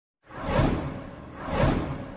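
Whoosh sound effects of an animated logo transition: after a brief silence, two swelling whooshes, about a second apart.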